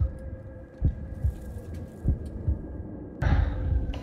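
Soft, irregular low thumps over a faint steady hum, with a short rush of noise near the end.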